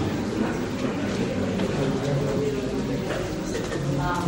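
Indistinct voices in a small, crowded room: a continuous murmur of speech over a low steady rumble, with no words clear enough to make out.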